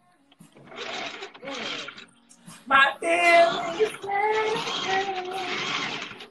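A voice singing or calling out in drawn-out, wavering notes over a steady hiss, heard through a phone's live-stream audio; a hissy, breathy stretch comes first.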